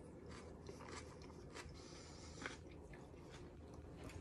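Faint chewing of a bite of a bell-pepper taco. A few brief soft crunches stand out, the most noticeable about two and a half seconds in.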